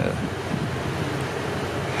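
Steady, even background noise, mostly low in pitch, with no distinct events.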